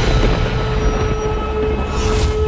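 Dramatic TV-serial sound effect: a loud, steady rumbling noise with a held tone running through it, and a brief whoosh near the end.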